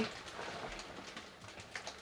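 Faint rustling and a few soft knocks from a large area rug being propped up and set in place, with the knocks near the end.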